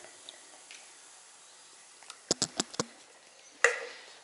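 A quick run of about five sharp clicks a little past halfway, then one louder knock near the end: a plastic shaker cup and drink cans being handled on a kitchen counter.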